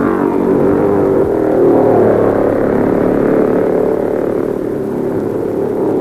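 500 cc Formula 3 racing cars with single-cylinder engines running at high revs as they pass on the circuit, a loud, steady engine note whose pitch wavers slightly.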